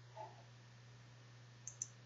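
Computer mouse button clicking, two quick clicks close together near the end, over a faint steady hum.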